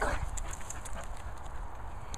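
Small dogs moving about on grass close to the microphone: a few faint light clicks over a steady low rumble on the microphone.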